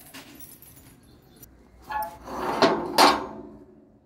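Metal jangling and clanking, rising a little over two seconds in and peaking about three seconds in before fading, with a brief voice sound just before it.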